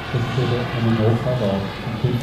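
A man's voice talking over a steady background rush, likely the distant turbine of the model jet in flight.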